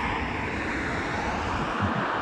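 Steady rushing vehicle noise with a low rumble, from passing traffic.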